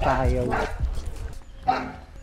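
A dog barking, with people's voices.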